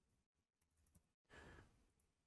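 Near silence, with a faint breath about one and a half seconds in.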